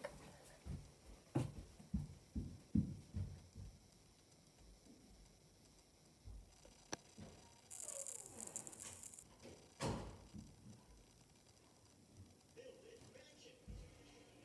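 Footsteps thudding on the floor as someone walks away, a series of heavy low steps over the first few seconds. Then quiet room tone, broken by a click, a short hiss and one more thump.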